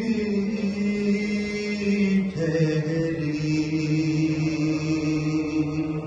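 A man's voice chanting an Urdu salam for Imam Hussain in long held notes, the pitch stepping down to a lower sustained note about two seconds in.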